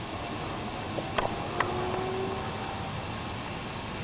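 Steady hiss of background noise, with a few faint clicks between about one and one and a half seconds in and a faint thin tone held for a couple of seconds.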